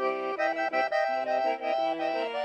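Piano accordion played solo: a quick phrase of short notes and chords, changing several times a second.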